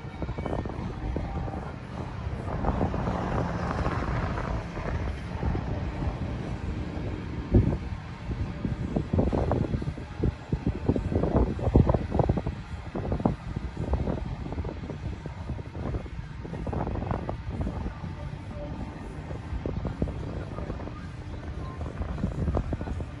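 Wind gusting across the microphone, irregular and thickest in the middle, over a low steady rumble.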